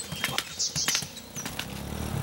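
Light clicks and scuffs of people climbing into an auto-rickshaw. About a second and a half in, the auto-rickshaw's engine comes in as a low, steady drone, growing louder as it pulls away.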